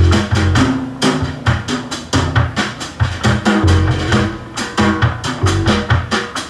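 Live jazz trio playing an instrumental passage led by the drum kit: quick snare, bass drum and cymbal strokes over low bass notes.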